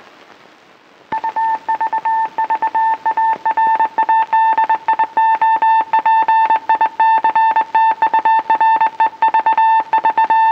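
Morse code beeping of the RKO Radio Pictures tower logo: one steady high-pitched beep keyed rapidly on and off in dots and dashes, starting about a second in after faint film-soundtrack hiss.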